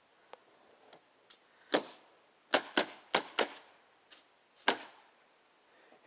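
A series of about seven sharp knocks, irregularly spaced over about three seconds, some with a short ring after them.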